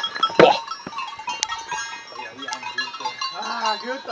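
Domestic goats bleating, several overlapping wavering calls in the second half, with a bell clinking now and then.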